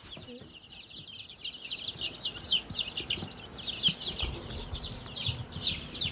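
A brood of young chicks peeping: many short, high, downward-sliding cheeps, several a second and overlapping.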